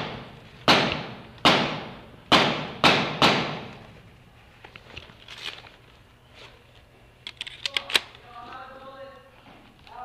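Paintball markers firing in a large indoor hall: five single shots in the first three and a half seconds, each with a long echoing tail, then a quick string of sharper cracks about eight seconds in.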